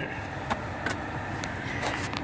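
Steady low hum inside the cabin of a running 2013 Cadillac XTS, with a few faint clicks scattered through it.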